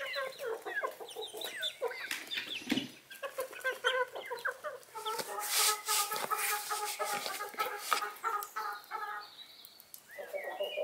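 A flock of domestic chickens clucking, with many short overlapping calls. About halfway through, a run of quick repeated clucks follows, mixed with scattered light scratching or flapping clicks.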